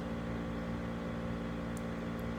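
Steady drone of a room humidifier: an even hum made of several low tones, with a faint tick near the end.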